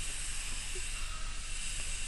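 Steady hiss with a low hum underneath: the microphone's background noise.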